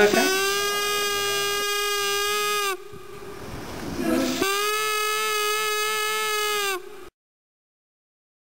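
Paper flute, a rolled paper tube with a creased paper flap as its reed, sounded by sucking air through the tube so the flap vibrates: two long, steady, reedy tones of about two and a half seconds each, with a short breathy pause between them and a slight dip in pitch as each one stops.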